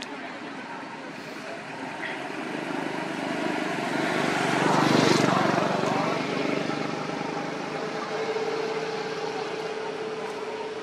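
A motor vehicle going past: its noise swells to a peak about halfway through and fades again. A steady hum starts near the end.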